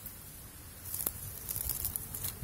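Dry reed stems and twigs rustling and crackling in a few short bursts in the second half, with one sharp snap just past the middle.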